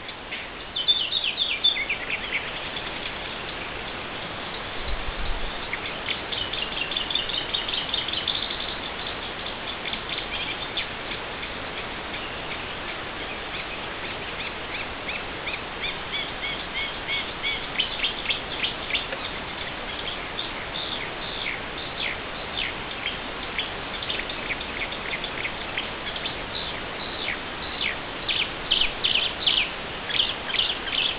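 Wild songbirds singing and calling, several overlapping songs of short high notes, trills and falling phrases, over a steady background hiss. Near the end one bird sings a fast run of sharp repeated notes.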